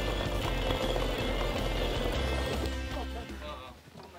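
Background music over a stone hand mill (maetdol) grinding coffee beans, a low grating of stone turning on stone. Both fade out near the end.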